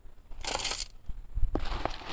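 Gritty succulent potting mix being poured from a plastic scoop and scooped from a tub: short grainy rustles, one about half a second in and more near the end.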